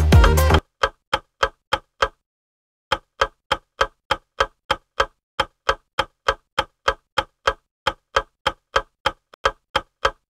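Dance music cuts off just under a second in, and a countdown-timer clock ticking sound effect takes over, ticking about four times a second with a brief break about two seconds in.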